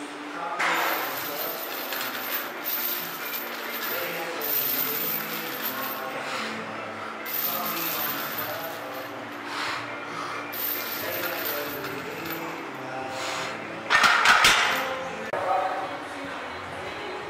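Metal clinking from a chained barbell bench press: chain links and iron weight plates jangling and clanking, with a loud burst of clanking near the end.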